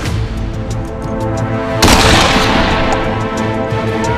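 A cannon fires once about two seconds in, a sudden blast that rings away over about a second, over steady background music.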